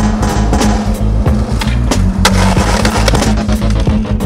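Skateboard wheels rolling on concrete, with a sharp board clack about two seconds in, over loud background music.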